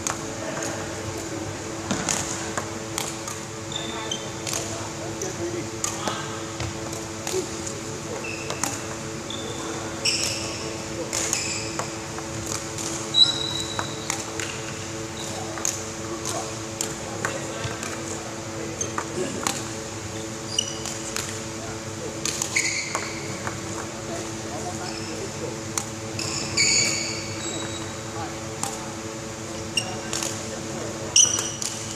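Badminton rackets hitting shuttlecocks again and again in a badminton rally drill, sharp hits spread through the whole stretch, with short high squeaks of shoes on the wooden court. A steady hum of the sports hall runs underneath.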